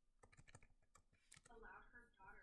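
Faint clicking, about ten quick clicks in the first second and a half, then faint muttered speech near the end.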